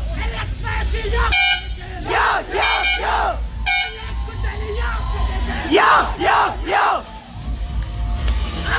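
A decorated bus's air horn giving three short blasts in the first four seconds, over loud music and people shouting.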